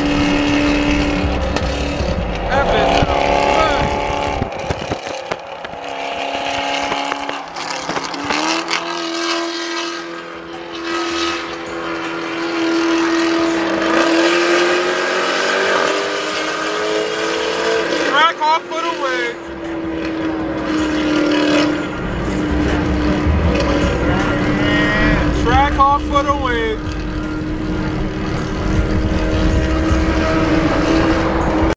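Car engine and road noise at highway speed heard from inside a car, a steady drone that rises in pitch as the car speeds up, then settles. A wavering voice cuts in briefly twice in the second half.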